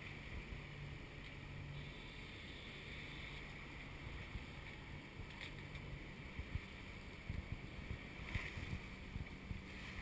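Sailboat under way with its auxiliary engine motor sailing at about 1500 RPM: a steady rush of water along the hull over a low engine drone, with wind buffeting the microphone in occasional low thumps.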